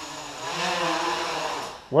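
Quadcopter's Tiger MS2208 brushless motors and 8-inch props buzzing with a steady whine, rising a little about half a second in, then dying away near the end.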